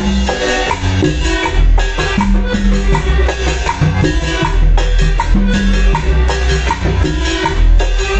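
Live cumbia band playing loud, with a steady bass line and a regular beat of percussion.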